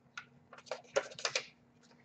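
Trading cards and plastic card holders being handled at a table: a quick run of soft clicks and rustles lasting about a second.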